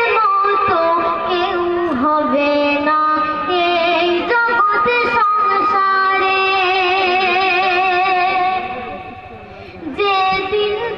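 A boy singing a Bengali gojol (Islamic devotional song) into a microphone, with long held, wavering notes. A long note from about six seconds in fades down near the end.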